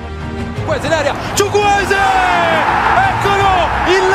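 Italian TV football commentator shouting excitedly in long, drawn-out cries as a goal goes in, over stadium crowd noise, with background music underneath.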